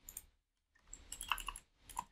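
Computer keyboard keystrokes as a line of code is deleted: two taps at the start, a quick run of keys about a second in, and one more near the end.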